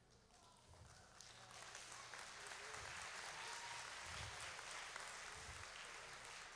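Faint applause from a congregation, starting about a second in, building, then holding steady.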